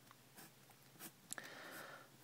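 Faint pencil strokes on paper as a digit is written and a box drawn around it: a few short scratches, then a longer stroke about a second and a half in.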